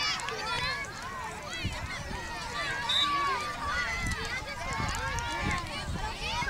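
Several voices, many of them children's, talking and calling out over one another outdoors, with a few low thumps mixed in.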